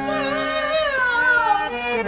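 Qawwali music: a harmonium holds steady chords while a melody line with vibrato glides slowly downward in pitch over them.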